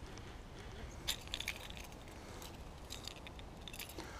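Rod and reel handling noise during a lure retrieve: faint low rumble with a few brief clusters of crackling clicks, about a second in, again near three seconds, and once more near the end.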